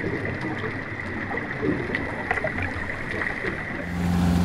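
Steady rushing, gurgling water heard underwater, with a faint steady high tone over it.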